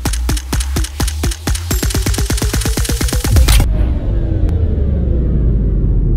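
Electronic logo-intro sound design. A rapid run of sharp clicks over a deep bass speeds up, then cuts off about three and a half seconds in. A low rumble with slowly falling tones follows.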